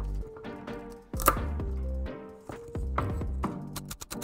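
Background music with a steady bass line, with one sharp knock about a second in. Near the end, a chef's knife starts chopping celery on a wooden cutting board in quick strokes.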